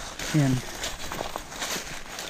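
Footsteps crunching and rustling through dry fallen leaves, an irregular run of crackly steps.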